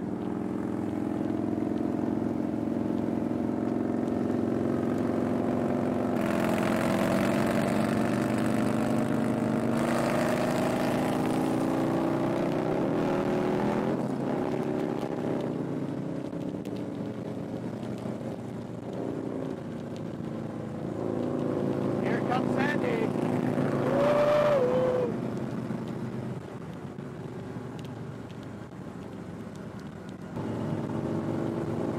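Harley-Davidson touring motorcycle V-twin engines running at highway cruising speed, with wind rushing over the microphone. The engine note drifts up and down with the throttle, and the wind rush swells twice, loudest about 24 seconds in.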